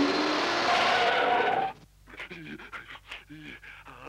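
A loud cartoon sound effect for a frantic whirling dash, a rush of noise with rising tones, cutting off suddenly about two seconds in. Then a character panting in short, breathless gasps.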